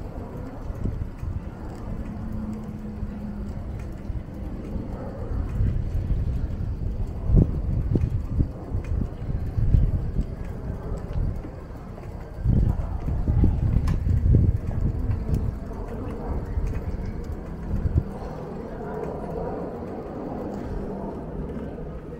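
Street ambience on a walk at night: footsteps on pavement with a low, uneven rumble that grows louder through the middle and eases off again.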